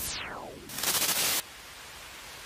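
Logo sting sound effect: a falling whoosh, then a loud burst of hissing noise about a second in that cuts off suddenly, leaving a steady hiss.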